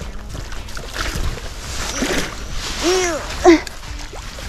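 A hooked bass splashing at the water's surface as it is played in close to the bank. About three seconds in come a woman's short straining vocal sounds.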